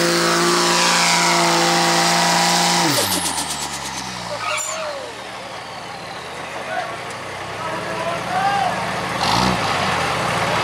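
Dodge Ram diesel pickup's engine held at full throttle at a steady high pitch while pulling the sled, then, about three seconds in, its revs fall away over a couple of seconds as the pull ends and the truck comes to a stop. Afterwards there is a lower background of crowd noise and voices.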